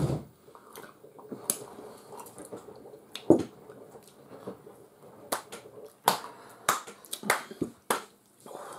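A series of short, sharp clicks and smacks at irregular intervals, about ten in all, coming closer together in the second half. One duller, louder thump falls about three seconds in.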